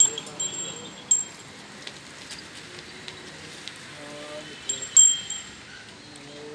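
Several short, bright metallic clinks with a brief ring, the loudest right at the start and about five seconds in, over faint background voices.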